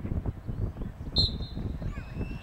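A referee's whistle gives one short, shrill blast about a second in, restarting play, over a steady low rumble of wind on the microphone.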